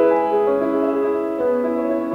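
Grand piano playing a slow classical prelude: sustained chords and single notes that change about every half second and ring on into each other.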